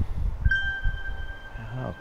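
Smartphone notification chime: a single clear tone about half a second in that rings and fades over about a second. It is the push alert of the Reolink app, signalling that the security camera has detected a person.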